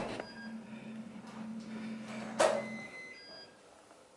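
Electronic keypad door lock operating: a steady low motor hum with faint short beeps, and one sharp click about two and a half seconds in as the lock releases.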